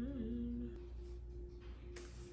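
A voice humming one held note that wavers briefly near the start and stops under a second in, over a steady low hum.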